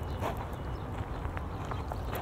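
Footsteps of a person walking on sandy, stony ground, about two steps a second, over a steady low rumble.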